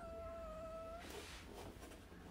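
A house cat meowing once: a single steady meow about a second long.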